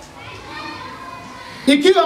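Faint background voices in a hall during a pause in the preaching, then a man's voice preaching over a microphone starts loudly near the end.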